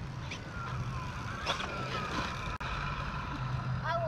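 Electric RC truck's motor whining as it drives, the pitch sliding up and down with its speed, over a steady low hum.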